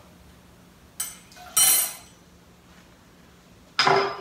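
Glassware knocking on a kitchen countertop: a click about a second in, a short clattering scrape soon after, and a sharp knock with a brief ring near the end as a glass tequila bottle is set down.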